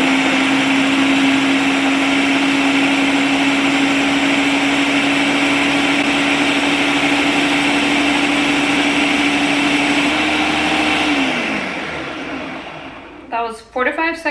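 Countertop blender running on its high setting, blending a liquid ginger-shot mix with a steady hum. About eleven seconds in the motor is switched off, and its pitch falls as it winds down.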